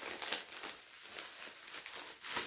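Plastic packaging crinkling and rustling as it is handled, with a few sharper crackles early on and softer rustling after.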